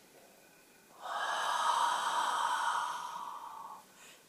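A woman's long, slow out-breath through a narrowed throat: a steady throaty hiss that starts about a second in and lasts nearly three seconds, fading near the end. It is the drawn-out exhale of a calming breathing exercise, the out-breath made longer than the in-breath.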